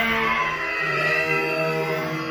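Music made of long, held notes, like a slow drone-like chord, with a new low note coming in about a second in.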